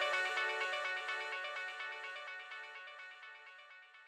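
Electronic background music, a quick run of short, bright repeating notes, fading out steadily to nothing by the end.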